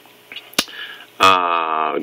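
A single short, sharp click a little over half a second in, against quiet room tone. A man's voice starts speaking about a second and a quarter in.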